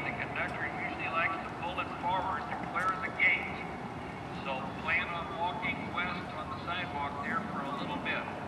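Station public-address announcement continuing over the loudspeakers, with a steady low rumble beneath it.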